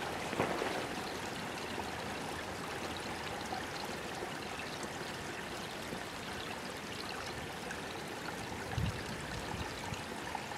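Shallow creek water flowing and trickling steadily, with a brief low thump near the end.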